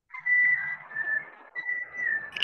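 A high, whistle-like tone that wavers slightly in pitch, with a short break about one and a half seconds in.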